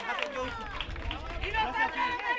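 A crowd of many voices calling out and talking over one another, with a few scattered claps.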